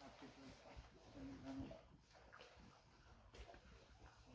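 Near silence, with faint brief snatches of voices.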